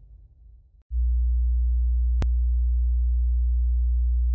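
A track fading out, then about a second in a loud, steady low hum starts and holds without change, with one short click near the middle.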